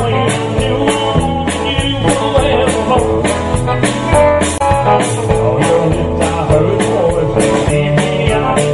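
Live rock-and-roll band playing: electric guitar over drums, with a steady cymbal beat of about four strokes a second.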